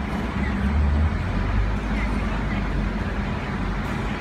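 Urban outdoor ambience: a steady low rumble of road traffic and idling engines, strongest in the first couple of seconds, with a faint murmur of background voices.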